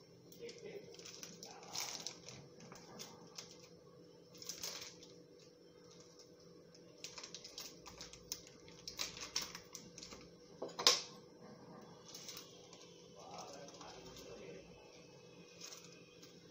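Faint scattered clicks and taps of a steel spoon and utensils being handled, with one sharper click about eleven seconds in, over a low steady hum.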